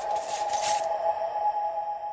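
Anime soundtrack: a single steady held tone, a drone-like music cue, with a short high swish about half a second in.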